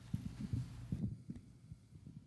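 Soft, irregular low thumps and bumps, several in the first second and fewer and quieter after, like movement in a room picked up by a microphone.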